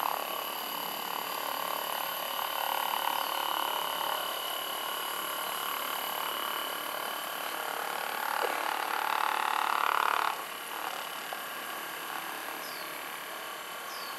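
Hypervolt percussion massage gun with a flat head, running at its second speed setting and buzzing steadily as it is pressed into the thigh muscle. The buzz grows a little louder from about eight seconds in, then drops suddenly at about ten seconds.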